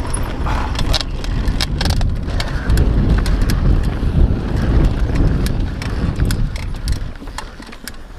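Mountain bike riding down a rough dirt trail, recorded from a camera on the rider: steady wind buffeting on the microphone and tyres on dirt, with frequent sharp clicks and rattles from the bike over bumps. It gets somewhat quieter near the end.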